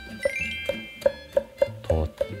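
Chef's knife slicing a red bell pepper on an end-grain wooden cutting board, quick even strokes tapping the board about four times a second. Plucked-guitar background music plays underneath.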